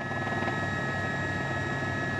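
Steady running of an aircraft in flight: a low, rapid flutter under a steady high-pitched whine.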